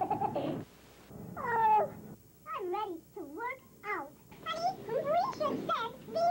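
Sped-up, high-pitched chipmunk voices talking in short, gliding phrases, with a brief pause about a second in.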